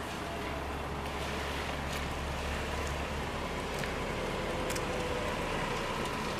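Steady outdoor background noise: an even hiss with a low hum that fades out about halfway, and a few faint ticks.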